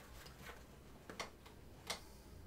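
A few faint, short clicks at uneven spacing, about four in two seconds, the last one the loudest.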